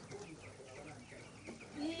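Faint, scattered high peeping of young chickens, with one small click about a second and a half in.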